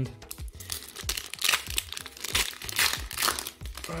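Foil Pokémon booster pack wrapper crinkling and tearing as it is ripped open by hand, an irregular crackle that is busiest in the middle.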